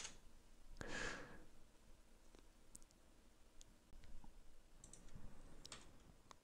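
Faint, scattered computer keyboard keystrokes, a few isolated clicks a second or so apart, with a soft breath about a second in.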